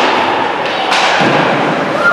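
Ice hockey play echoing in an indoor rink: sharp knocks of stick and puck, one right at the start and another about a second in.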